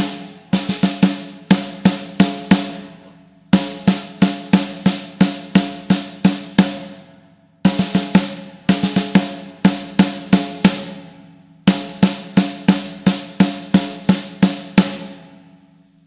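Snare drum played with sticks, alternating hands: a quick cluster of triplet strokes, then evenly spaced single strokes, the figure repeated four times with a short pause before each repeat. The drum rings on after each stroke.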